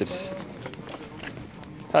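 A pause in a man's speech: a short breath at the start, then only faint, even background noise until he speaks again at the end.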